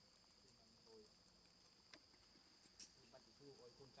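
Faint, steady high-pitched drone of forest insects such as crickets. A faint low voice comes in briefly about a second in and again near the end, with a few light ticks.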